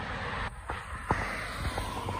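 Quiet outdoor street background: a steady low hiss of road traffic, with a few faint clicks and a brief drop about half a second in.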